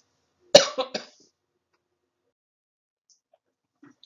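A woman coughs twice in quick succession, about half a second in.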